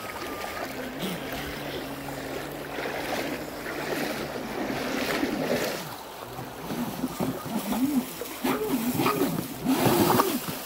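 StreamlineRC Thrasher RC jetboat's motor and jet pump whining, holding a steady pitch at first, then revving up and down in quick throttle bursts over the last few seconds, with the loudest burst at the end as it jets through very shallow water throwing spray, over rushing creek water.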